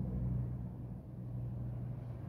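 Low, steady hum with a faint rumble beneath it, and no voices.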